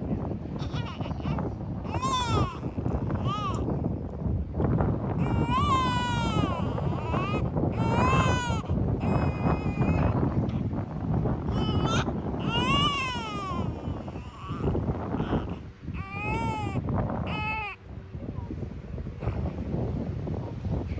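Newborn baby crying in repeated wails, each rising and then falling in pitch, with short gaps between them.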